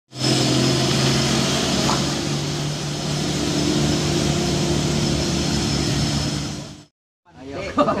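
Heavy vehicle engines running steadily with a deep diesel hum. The sound cuts off suddenly about a second before the end, and a person laughs.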